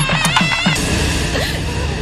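Title theme music: a quick run of sharp pitched percussive strikes that stops under a second in and gives way to a sustained, even wash of sound.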